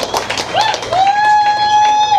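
Audience clapping and cheering, with a long held whoop from about a second in to the end.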